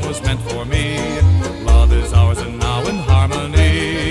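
Polka band music played back from a 1969 vinyl LP: a steady oom-pah bass beat, about two a second, under the melody instruments.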